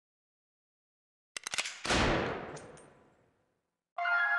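Gunshot sound-effect one-shot sample from a trap drum kit, played back: a quick rattle of sharp clicks, then one loud shot whose echoing tail fades out over about a second and a half.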